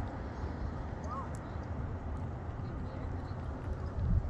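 Steady low outdoor rumble, with a faint short chirp about a second in.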